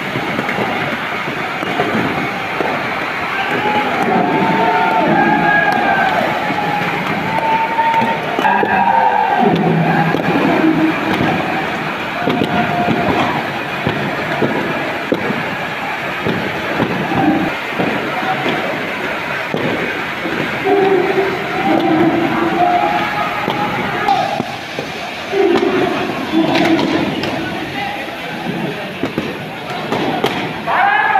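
Tunnel boring machine's cutterhead grinding through a concrete shaft wall: a steady mechanical grinding with many knocks through it, and crowd voices shouting over it.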